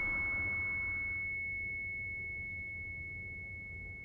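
A steady, high-pitched pure tone that holds one pitch throughout, over a soft hiss that fades away about a second in.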